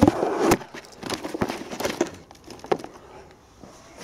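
Handling noise: a rustling burst with a sharp click at the start, then several scattered light clicks and knocks that fade out, as equipment and the camera are moved about.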